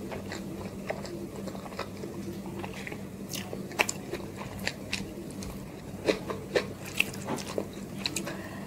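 Close-miked chewing of a mouthful of chicken biryani, with short wet mouth clicks and smacks scattered through, more of them in the second half, over a low steady hum.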